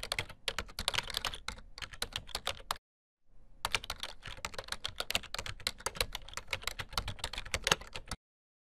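Computer keyboard typing: a fast run of key clicks, with a brief pause about three seconds in before the typing resumes.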